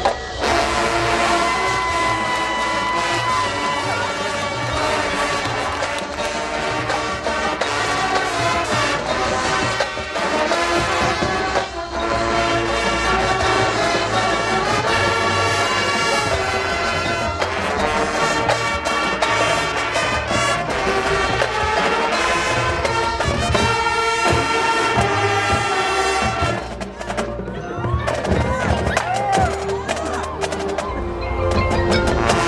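High school marching band playing live, brass and percussion together, heard from the stands of an open-air stadium. The music runs loud and steady, dipping briefly near the end.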